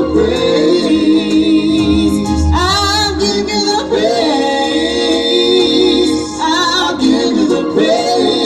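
A slow gospel song: singing voices hold long notes with vibrato over sustained keyboard chords, with two rising, wavering vocal swells, one about midway and one near the end.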